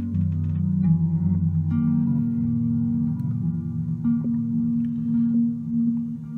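Empress ZOIA pedal running the Quark Stream micro-looper patch in its unchopped mode: sustained low tones are caught and repeated as stuttering micro-loops of random length. The pitch shifts several times, about every second or two.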